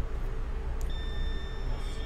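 Multimeter continuity beeper sounding one steady high tone that starts about a second in, over a low steady hum. The beep signals that the probed MOSFET pin has continuity to ground.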